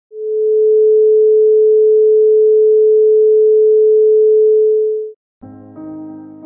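A single steady electronic sine tone, held at one mid pitch for about five seconds with a smooth fade in and out. After a brief gap, soft keyboard music begins near the end.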